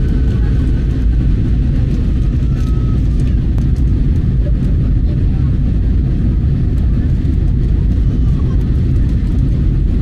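Jet airliner cabin noise: a steady, loud, low rumble of engines and airflow heard from inside the cabin during the descent.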